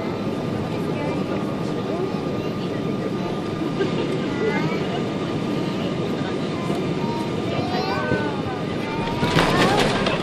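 Boeing 777-200 cabin noise on short final: a steady rumble of engines and airflow over the wing. About nine seconds in, a sudden louder rush and rumble comes as the main gear touches down and the spoilers rise.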